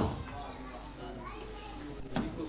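Faint murmur of voices from a gathered crowd, children's voices among them, after a short loud sound that dies away right at the start.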